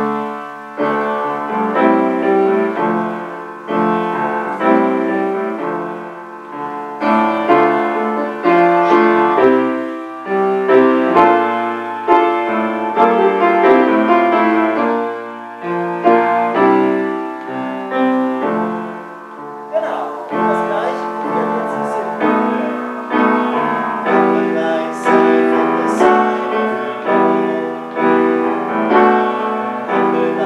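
Grand piano playing a slow gospel chord accompaniment: chords struck one after another and left to ring and die away.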